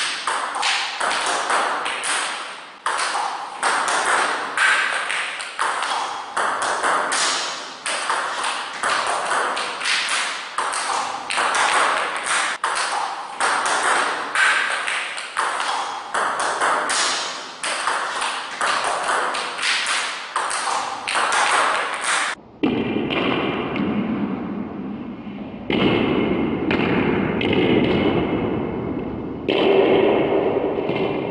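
Celluloid/plastic table tennis ball hit with a rubber paddle again and again, each hit paired with a bounce on the table, in a fast rhythm of sharp clicks about two a second: backhand flicks played off short balls. About twenty-two seconds in, the sound turns duller and noisier with fewer hits.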